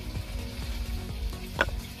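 Dry grass tinder bundle burning in open flame, crackling, with one sharp pop about one and a half seconds in.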